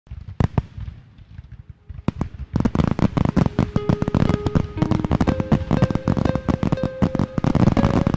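Firecrackers going off: a few separate bangs in the first two seconds, then a dense, rapid crackle from about two and a half seconds in, with music faint beneath.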